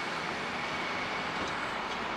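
Steady road noise of a moving car, heard from inside the cabin.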